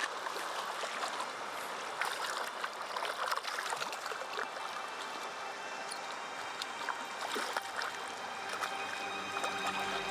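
Shallow river water running and trickling over stones, with scattered small splashes at the surface.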